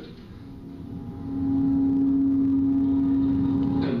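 A single low tone from the projected documentary's soundtrack, played back through the room's speakers. It swells in about a second in, holds steady in pitch, and stops just before the narration resumes, over a low background hum.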